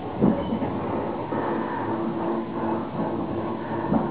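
Nankai electric train heard from inside the front car, rolling at low speed: wheels knocking over rail joints, once just after the start and again near the end, over a steady running rumble with a humming tone from about a second in.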